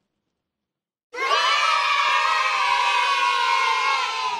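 A group of children cheering one long "yay", many voices together, starting suddenly about a second in after silence and falling slightly in pitch.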